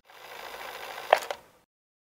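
Short tape-styled outro sound effect: a hiss swells in and holds, a sharp click about a second in and a smaller one just after, like a tape machine's transport button, then it cuts off suddenly.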